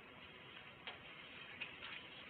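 Faint steady hiss with a few light clicks: one about a second in and two more close together near the end.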